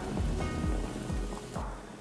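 Chopped garlic and ginger sizzling gently in hot oil in a pan, under background music.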